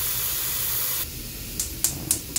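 Tap water pouring into a metal saucepan, a steady hiss as the pan fills, which cuts off about a second in. Two light clicks follow near the end.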